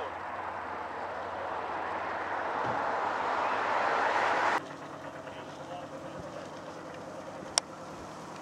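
Racing lobster boat's engine running and getting louder as the boat accelerates away, cutting off suddenly about four and a half seconds in; after that a quieter steady background with a sharp click near the end.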